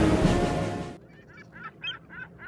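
Music fading out over the first second, then a rapid string of short bird calls, about four or five a second.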